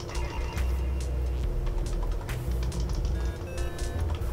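Computer keyboard keys clicking in irregular runs as text is typed and backspaced, over a steady low rumble.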